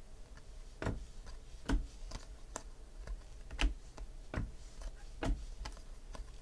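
2016 Donruss Optic football trading cards being flicked off a stack one at a time, a short sharp card snap about once a second, six in all.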